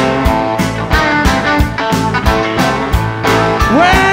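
Live blues band playing between vocal lines: guitar over bass and a steady drum beat of about four hits a second. A singer comes in with a rising note near the end.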